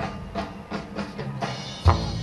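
Live rock band opening a song: a drum kit plays a steady beat over bass, with a loud accented hit just before the end.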